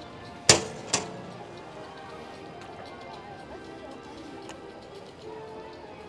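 Two sharp knocks about half a second apart in the first second, then faint background music over steady walkway ambience.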